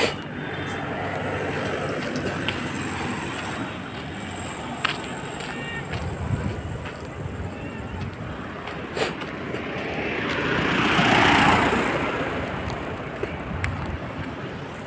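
Steady outdoor background noise, with a vehicle passing on the road whose sound swells to a peak and fades about two-thirds of the way through.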